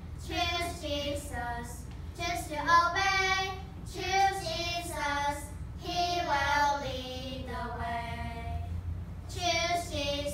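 A small group of children singing a worship song in unison, phrase after phrase with short breaths between.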